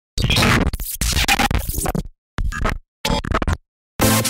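Opening of an electronic remix track made in Music Maker JAM: four chopped, stuttering scratch-style bursts of sound, cut apart by short silences, the last gap lasting nearly half a second.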